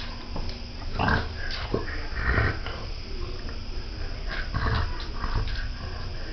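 A French bulldog sniffing and snorting through its short muzzle in short, irregular bursts, the loudest about one and two and a half seconds in.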